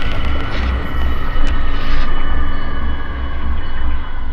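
Cinematic logo-sting sound design: a deep rumble that swells and dips, under sustained high electronic tones, with a few sharp ticks around the middle.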